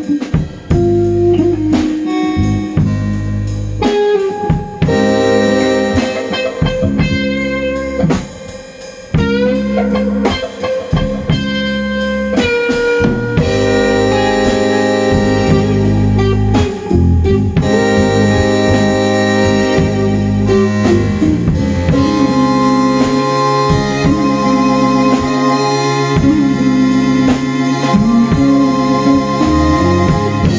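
Live band playing an instrumental passage: electric guitar, keyboard, electric bass and drum kit. A few notes glide upward about ten seconds in.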